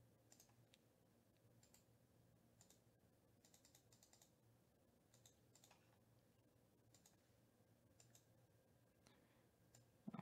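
Near silence with faint, scattered computer keyboard and mouse clicks at an irregular pace, a few in quick clusters.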